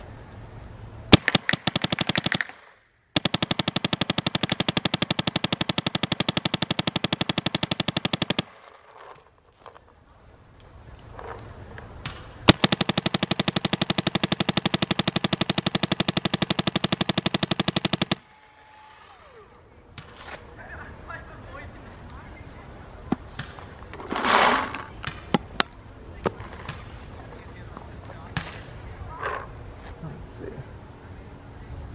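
Empire Axe 2.0 electronic paintball marker firing long, very rapid strings of shots. A short burst comes first, then two strings of about five seconds each with a pause between, and a few scattered single shots afterwards.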